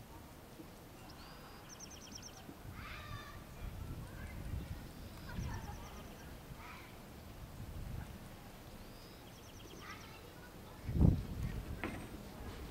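A small songbird singing a short high phrase, a slurred note followed by a quick trill, three times about every four seconds, over a faint low rumble. A sudden low thump near the end is the loudest sound.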